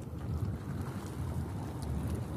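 Wind buffeting a phone microphone: a steady low rumble with uneven gusts.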